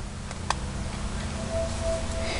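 A single sharp click about half a second in as a plastic MAC blush compact is pried open, over a low steady background hum.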